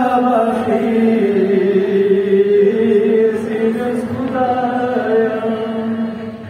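A Balti qasida, a devotional poem, chanted in a melodic voice that holds long, slowly gliding notes.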